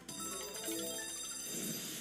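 Sweet Bonanza 1000 slot game's jingle of many held, ringing high notes, played as four lollipop scatter symbols land and trigger the free-spins bonus.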